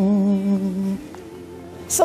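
A voice humming a short tune that ends on one held note lasting about a second, followed by a quieter pause.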